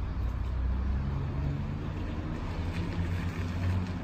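Steady low engine rumble of a running motor vehicle, its pitch shifting slightly.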